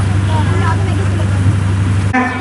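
A loud, steady low hum carries on under faint speech from a girl talking into a stage microphone.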